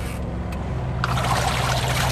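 XtremepowerUS portable washing machine switched on with water in the wash tub: a steady motor hum starts just under a second in, and about a second in the agitator begins churning and sloshing the water, mixing in fabric softener.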